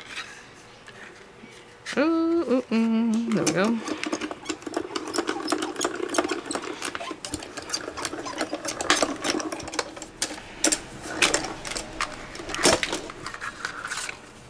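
Small die-cutting machine rolling a cutting-plate sandwich with a metal die and cardstock through its rollers: a steady, rapid clicking and whirring run that lasts several seconds and stops shortly before the end. A short hummed voice sound comes about two seconds in.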